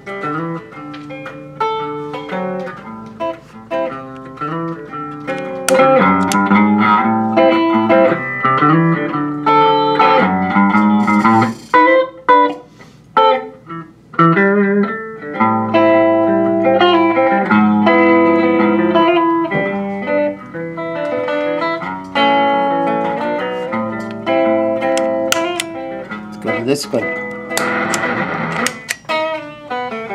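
Electric guitar played through a Fender The Bends compressor pedal: picked single notes and chords, getting clearly louder about six seconds in.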